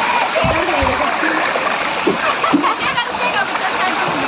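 Water splashing and spraying steadily, with people's voices shouting and chattering over it. Two low thumps come about half a second in.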